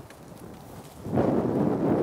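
Rustling and rubbing noise that starts about a second in as the light stand and its umbrella softbox are lifted and carried round.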